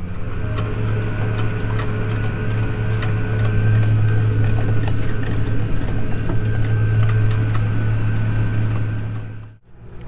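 Tractor engine running steadily under way, heard from inside the cab, with a low even hum and light rattling clicks. It cuts off suddenly shortly before the end.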